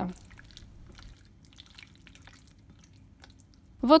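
Faint, wet squishing and clicking from a hand mixing thin strips of raw beef in a soy-sauce marinade in a glass bowl.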